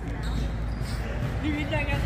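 Dull, muffled thuds over a low rumble, with no sharp cracks, as a fight bout resumes in the ring.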